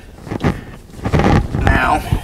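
PVC sink drain pipe and P-trap being handled and screwed together by hand: plastic rubbing and knocking, a short bout about half a second in and a longer one from about a second in.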